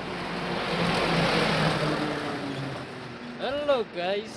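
A motor vehicle passing on the road: engine and tyre noise rises and then fades over about three seconds. A voice speaks briefly near the end.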